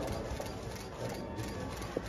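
Outdoor background sound: a low rumble with a faint murmur of voices and a few sharp clicks in the second half.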